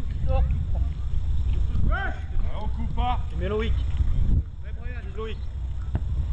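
Shouts and calls of high young voices across an open football pitch, several short calls a second at times, over wind rumbling on the microphone; the wind rumble drops away suddenly about four and a half seconds in.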